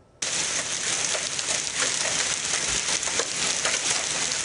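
Hail and rain pelting pavement: a dense, steady clatter of many small ticks that starts abruptly just after a brief hush at the very start.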